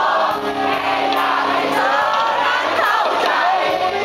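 Live rock band playing with a large crowd singing along. The band's held low notes drop away about two seconds in, leaving the crowd's voices most prominent.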